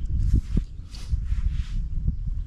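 Wind rumbling on the microphone, with a few soft rustles.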